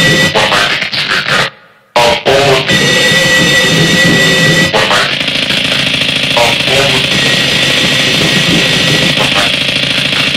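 Harsh noise music: a loud, dense wall of distorted noise with steady high tones running through it. It cuts out abruptly for a moment about a second and a half in. About five seconds in it shifts to a thicker, more even roar.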